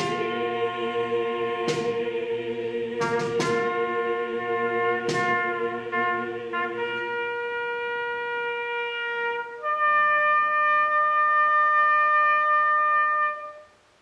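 A choir holds a sustained chord that dies away about halfway through. A lone trumpet then plays a long held note and moves up to a higher, louder held note that cuts off near the end.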